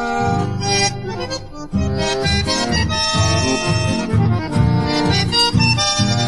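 Instrumental chamamé passage led by accordion, with held chords and melody over a regular bass beat that starts about two seconds in.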